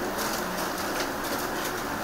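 Camera shutters clicking repeatedly as press photographers shoot, over a steady background of room noise.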